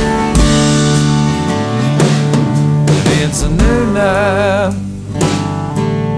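Country band playing an instrumental passage between sung lines: a drum kit keeping a steady beat under a strummed acoustic guitar, and a pedal steel guitar sliding between notes, with a wavering vibrato a little past the middle.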